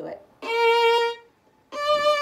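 Violin playing two slow bowed notes on the A string, B flat and then a higher D, about a second each with a short silent gap between. It is a shift from first to second position with the C natural ghost note left out.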